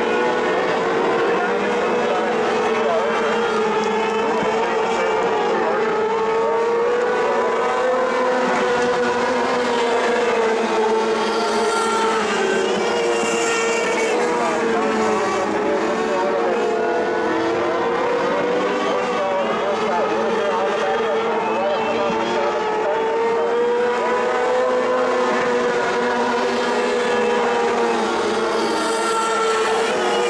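Micro mod race car engines running on a dirt oval, their pitch rising and falling gently as the cars lap the track.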